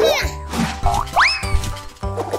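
Cartoon trampoline-bounce "boing" sound effect, a quick rising glide about a second in, over children's background music with a steady beat. A child's voice exclaims at the start.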